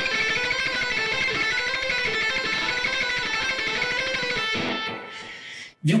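Electric guitar, an LTD Deluxe single-cut, picked in a rapid run of notes that stops about four and a half seconds in and rings away. The picking hand is fast but the fretting hand does not keep pace, so the hands are out of sync and the line sounds strange.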